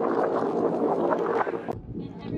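Wind buffeting the microphone over the steady hum of a whale-watch boat's engine. It cuts off abruptly near the end.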